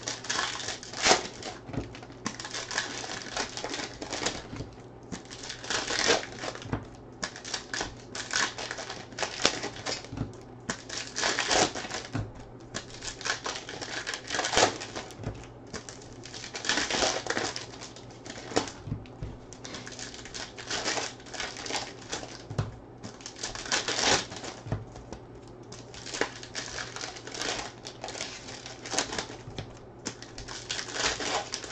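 Plastic wrappers of trading card packs crinkling and tearing as they are opened by hand, in irregular bursts of rustling, with the cards handled between them.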